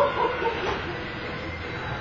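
Steady hum of an indoor ice-rink arena during a stoppage in play, with faint steady high tones running through it. A brief louder sound that glides up and down in pitch sits in the first half second.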